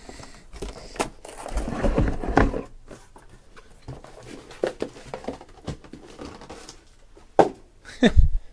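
Sealed cardboard hobby boxes being lifted and slid out of a cardboard shipping case and set down on a table: scraping and rubbing of cardboard with scattered soft knocks, and one louder thump near the end.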